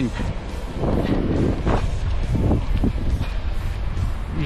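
Wind rumbling on the microphone, with a few soft slaps as a small, just-landed fish flaps on the concrete.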